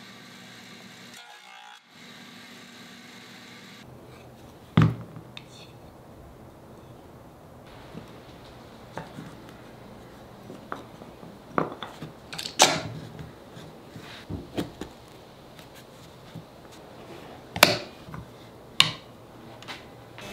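A faint steady hum for the first few seconds, then a string of separate knocks and clicks as small pine boards and metal clamps are handled and set down on a wooden workbench during a glue-up. The sharpest knocks come about five seconds in and twice near the end.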